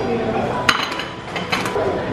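A spatula clinking against a cooking pan: one sharp clink with a brief ring about a third of the way in, then a few lighter clicks near the end.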